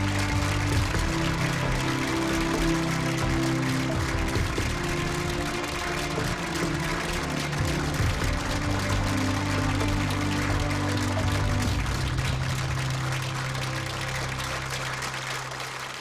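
Studio audience applauding over music with steady held low notes. The applause and music ease slightly near the end.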